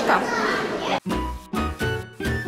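Voices and children's chatter in a busy indoor hall, cut off suddenly about a second in by a short music jingle with a heavy, punchy bass beat.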